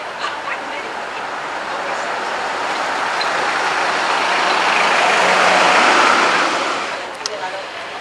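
A motor vehicle driving past on the road, growing louder to a peak about six seconds in and then fading quickly.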